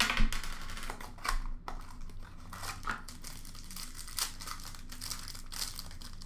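Foil wrapper of an Upper Deck SP Game Used hockey card pack crinkling as it is opened by hand: a run of irregular crackles, loudest in the first second and a half.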